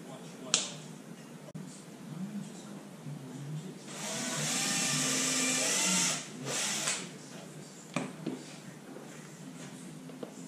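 Cordless drill driving into a plywood nesting box, one run of about two seconds with its motor pitch shifting, then a shorter burst.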